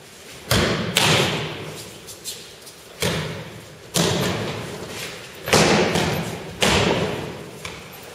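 Aikido throws and breakfalls: bodies hitting tatami mats, about six heavy thuds at irregular intervals. Each thud rings out and fades in the hall.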